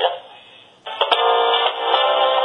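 Telephone hold music comes in about a second in, after a short lull, and carries on steadily. It is heard down the phone line, so it sounds narrow and thin.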